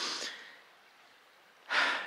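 A man breathing close to the microphone: a short breath out at the start, then a quick intake of breath near the end.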